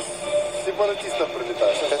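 Speech in a radio news report, with a steady high tone running underneath.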